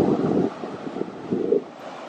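Wind buffeting the microphone in gusts, strongest near the start and again about one and a half seconds in, over a steady hiss of ocean surf.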